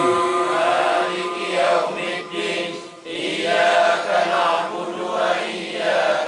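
A group of men chanting Arabic devotional recitation (zikir) in unison through a public-address system, in long drawn-out sung phrases, with a short break about three seconds in.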